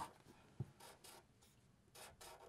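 Faint strokes of a felt-tip marker on paper, a few short scratches as small toenails are drawn, with a small click about half a second in.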